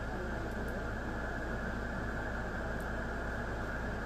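Shortwave receiver audio from an SDRplay receiver tuned to the 20-metre amateur band. It is a steady hiss of band noise through the receiver's narrow voice filter, with a low hum underneath.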